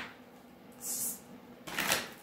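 Tarot cards being shuffled in the hands: a short soft rustle of card stock about a second in and another just before the end.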